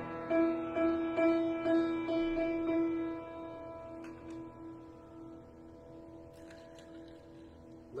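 Upright piano: the same chord struck over and over, about twice a second, then left ringing from about three seconds in and slowly fading away.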